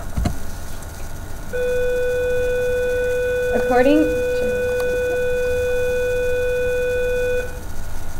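A steady, even beep-like tone holds for about six seconds, starting about a second and a half in and cutting off shortly before the end. There is a brief voice-like sound about four seconds in and a dull thump right at the start.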